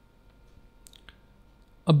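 Two faint computer clicks about a second in, refreshing a web page, over quiet room tone.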